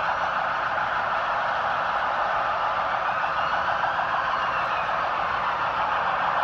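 Police car siren sounding continuously over a crowd's noise, the signal of officers clearing pilgrims camped in the roadway.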